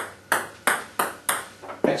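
Table tennis ball being served and bouncing: a string of sharp, short ticks, about three a second.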